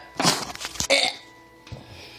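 A woman gives one harsh, breathy cough-and-gasp lasting under a second, her throat irritated by a mouthful of dry ground cinnamon.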